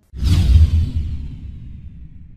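Whoosh transition sound effect: a sudden rush with a deep rumble that starts just after a brief gap, its hiss sliding down in pitch and fading away over the next second or so.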